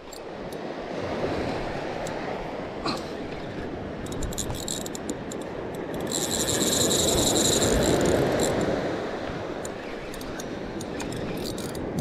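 Surf washing steadily on the beach, swelling about six seconds in. During the swell a spinning reel's drag buzzes for about three seconds as a hooked fish pulls line, with light clicks from the reel before and after.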